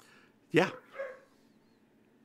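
Speech: a short spoken "yeah" and a brief second sound from the voice, over quiet room tone.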